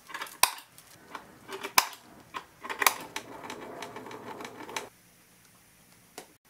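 Sharp clicks and light metallic rattling as a steel piano hinge is handled and screwed onto a plywood cabinet with a hand screwdriver. A few separate clicks come first, then a busier stretch of clicking and rattling that stops about five seconds in.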